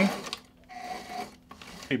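Sewing machine running briefly, a faint short whir about half a second in, as a few reverse stitches lock the end of a zipper seam.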